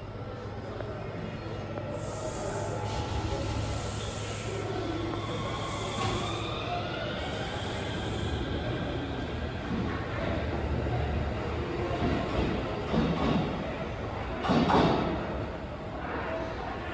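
Electric commuter train pulling out of the station, its traction motors giving a whine that glides up in pitch as it accelerates, over a steady rumble of the train and platform. A louder burst of noise comes near the end.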